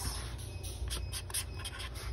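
Felt-tip permanent marker writing on a cardboard box flap: a run of short strokes as a date is written.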